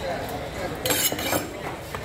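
Metallic clinks and scraping from a steel fish-cutting knife, a short clatter about a second in that lasts about half a second.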